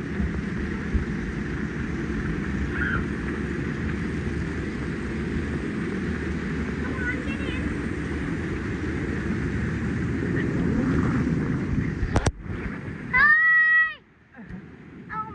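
Water rushing down an enclosed fibreglass water-slide tube with the steady rumble of riders sliding through it, and a few faint squeals. Near the end a sharp knock, then a loud, high-pitched child's shout lasting about a second.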